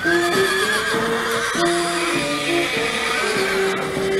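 A horse whinnying over roughly the first second and a half, a long wavering call, over music with a melody of held notes that plays throughout.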